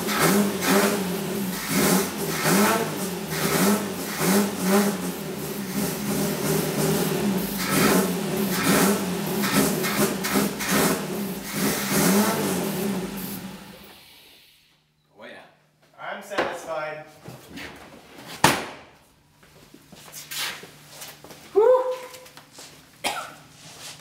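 Saab V4 engine running on starting fluid sprayed into its carburettor, with a quick, uneven pulsing; the speaker's word for it is "mean". It cannot idle on its own, and a little past the middle it fades and dies. Afterwards come short voice sounds and a sharp click.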